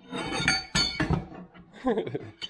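Metal e-bike folding stems and handlebars clinking and knocking against each other as they are handled in a pile, a quick run of clanks with a brief metallic ring in the first second.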